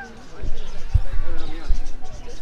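A series of low, dull thumps, the strongest about a second in and again near the end, from the phone being handled and swung around while filming, over faint background voices.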